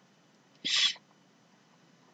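A single short breathy hiss from a person, a quick intake of breath, a little under a second in; otherwise near silence.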